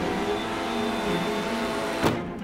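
Gas-powered backpack leaf blower engine running steadily at high speed.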